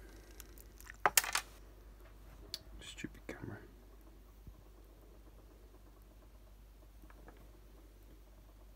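Handling noise from a hub-motor stator assembly being turned over in the hand: a few sharp clicks and knocks about a second in, lighter taps a couple of seconds later, then quiet room tone.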